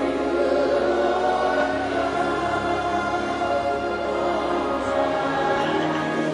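Choir singing slow, sustained worship music with accompaniment, the held chord changing about two seconds in and again near the end.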